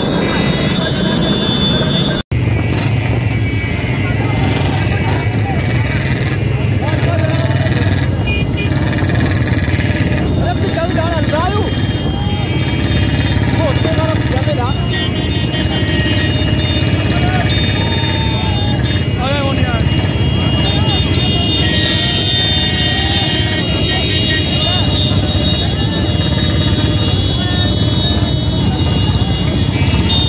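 Motorcycle engines running continuously under indistinct shouting voices, with a brief dropout about two seconds in where the footage is cut.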